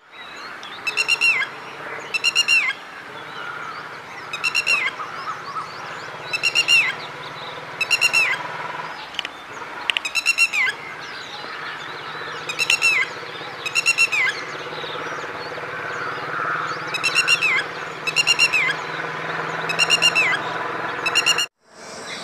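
Red-wattled lapwing calling repeatedly: about a dozen short bursts of sharp, high notes, each note falling at its end, one burst every one to two seconds, over a faint steady background.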